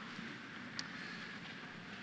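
A congregation sitting down in church pews: a faint, steady rustle and shuffle of many people settling, with one small knock about a second in.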